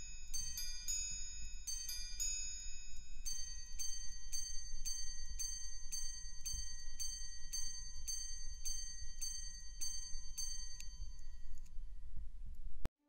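Patek Philippe Ref. 6301P Grande Sonnerie wristwatch chiming: small hammers striking its gongs, each strike a bright ringing tone. A first group of strikes at different pitches gives way, about 3 s in, to a steady run of single strikes about two a second, which stops about 11 s in.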